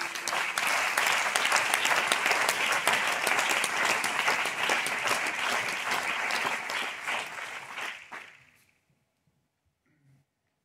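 Audience applauding a sung verse, dying away about eight seconds in.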